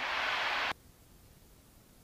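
Steady hiss of an open aircraft intercom microphone that cuts off abruptly under a second in as the voice-activated squelch closes, leaving near silence.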